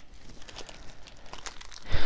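Soft, irregular crinkling of a thin plastic wrapper as a stack of trading cards is handled and worked out of it, with faint scattered ticks.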